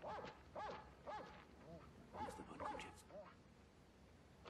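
Dogs giving a quick run of short, rising-and-falling yelps, about a dozen, dying away after about three seconds.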